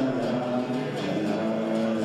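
A large audience singing a song together in unison, with long held notes, led by a singer with an acoustic guitar.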